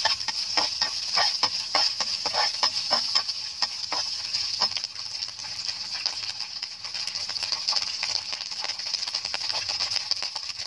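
Halved meatballs and chopped garlic sizzling in hot oil in a pan, with a metal spatula scraping and tossing them in quick strokes for about the first half, then steady sizzling alone.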